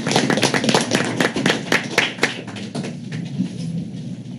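A small group applauding, the claps thinning out and stopping a little over two seconds in, leaving faint room noise.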